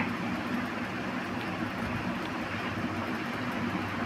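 Steady background noise, an even low hum and hiss with no distinct events.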